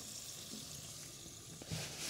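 Green puri deep-frying in hot oil in a pan: a steady, soft sizzle. A short knock comes near the end, followed by louder hiss.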